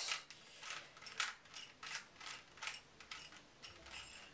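Plastic Rubik's Cube clicking as its layers are turned quickly by hand: a fast, uneven run of short clicks, several a second.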